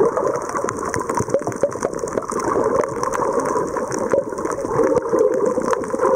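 Sound recorded underwater: a steady muffled rush of moving water, with many scattered sharp clicks and crackles.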